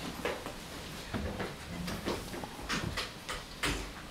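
Scattered, irregular knocks and clicks, with no sustained music or speech.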